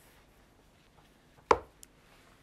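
A mahjong tile clacking sharply once, about one and a half seconds in, followed by a faint lighter tick.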